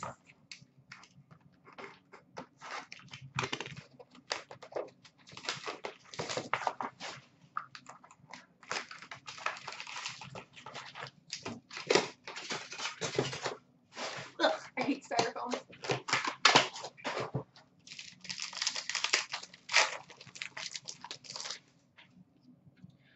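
Hockey card box wrapping and packs being torn open by hand, with a busy run of wrapper crinkling, ripping and card handling. There are short pauses about two thirds of the way through.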